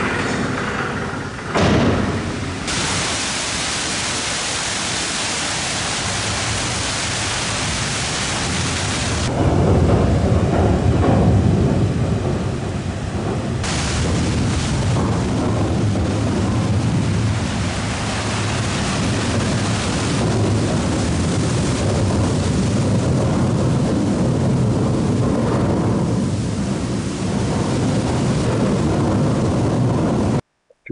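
Water pouring through a large water wheel as it turns: a steady rushing, which becomes deeper and louder, with a heavy rumble, about nine seconds in. The wheel is the water power that drives the cable haulage of the boat incline.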